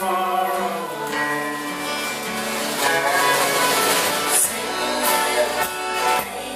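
A live country-folk band playing, with acoustic and electric guitars, fiddle and drums, and a voice singing.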